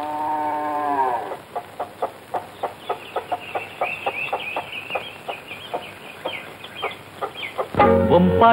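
A held musical note falls away in the first second, then farmyard sounds: hens clucking with short high chirps over a regular soft knocking, about two or three knocks a second. Full music comes back right at the end.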